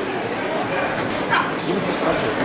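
A dog whimpering and yipping, with a short rising cry about a second and a half in.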